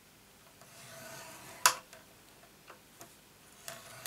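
Scoring stylus drawn along a groove of a Simply Scored scoring board, creasing cardstock: a soft scrape, then one sharp click about one and a half seconds in and a few light ticks.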